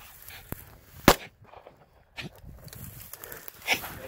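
A single close-range rifle shot about a second in, the finishing shot fired into a wounded wild boar lying a few metres away.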